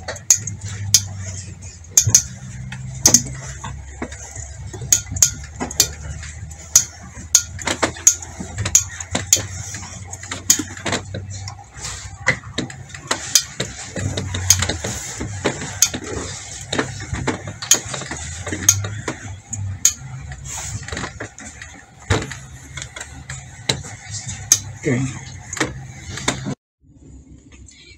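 Irregular sharp clicks and knocks, roughly one or two a second, as a clothes iron is worked over folded fabric pleats. A steady low hum runs underneath.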